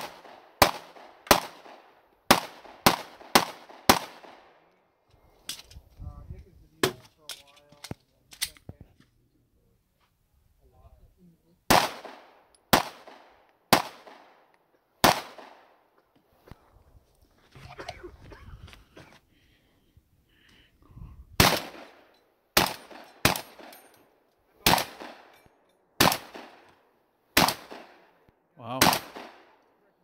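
Competition gunfire at close range: a fast pistol string of about eight shots at the start, four slower shots roughly a second apart in the middle, then after a pause a long gun fired about ten times near the end.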